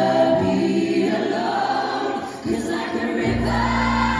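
Live vocal group singing sustained chords in close harmony with no instruments seen, the chord breaking and re-entering about two and a half seconds in. A deep bass note comes in under the voices near the end.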